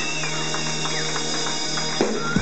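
Live band music with a DJ scratching a record on a turntable: quick rasping back-and-forth strokes, about four a second, over a held low note.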